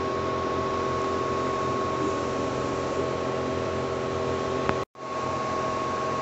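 Makeblock Laserbox Rotary CO2 laser cutter running as it works on cardboard: a steady whir with a few held tones under it. The sound cuts out for an instant about five seconds in, then comes straight back the same.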